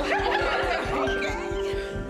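A group of young women laughing together over background music with a steady beat; the laughter fades near the end.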